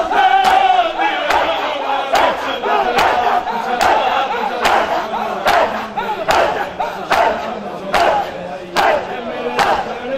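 A crowd of men doing matam: hands striking chests in unison, a sharp slap a little more than once a second, under loud crowd chanting of a noha.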